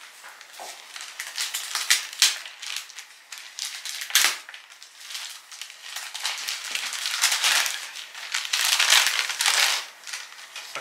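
Gift-wrapping paper crinkling and rustling in a man's hands as a present is unwrapped carefully rather than torn open. Irregular crackles, with a sharp crinkle about four seconds in and longer, louder rustling in the last three seconds.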